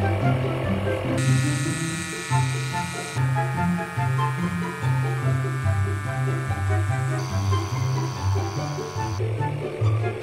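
Portable electric tire inflator's small motor-driven compressor buzzing steadily as it pumps air into a car tire. It starts about a second in and stops near the end, its tone shifting abruptly a few times, over background music with a steady bass line.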